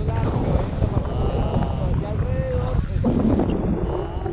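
Wind rushing over the camera microphone in flight on a tandem paraglider, a steady low rumble, with faint voice sounds over it.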